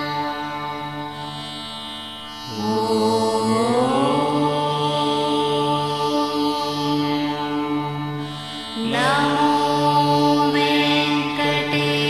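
Devotional background music: a chanting voice over a steady drone. Twice, about two and a half seconds in and again near nine seconds, the voice slides up into a long held note.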